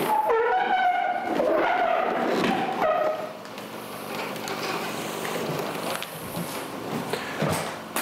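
Air being drawn out of a plastic vacuum bag sealed over a ski press mould, through its valve: a wavering squeal for about three seconds, then a steady hiss as the bag is evacuated.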